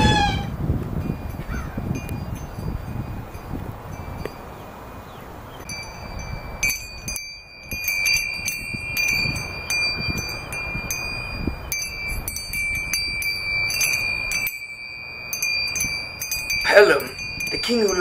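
Metal wind chime of hanging hummingbird figures tinkling in the breeze: light, irregular strikes, each leaving a high ringing tone that lingers, beginning about six seconds in.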